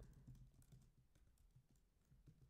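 Faint computer keyboard typing: a quick run of light key clicks.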